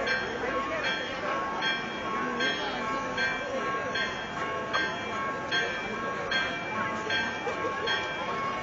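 Church bells ringing in a steady rhythm, a stroke about every 0.8 seconds with each tone ringing on, over the chatter of a large crowd.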